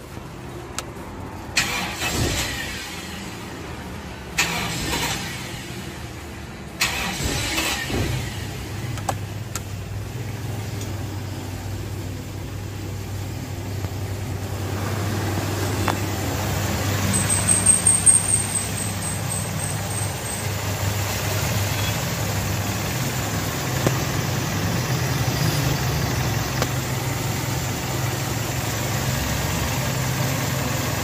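Toyota Kijang's 7K four-cylinder carburettor engine being started after its rebuild: three short bursts of cranking, then it catches about eight seconds in and settles into a steady idle. A brief high chirping sound comes about halfway through.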